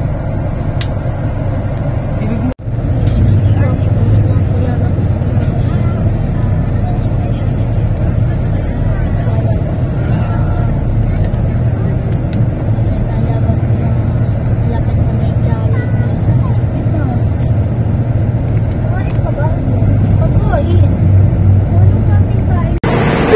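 Inside a moving coach bus: a steady low rumble of engine and road noise, with faint voices under it. The sound cuts out for an instant between two and three seconds in.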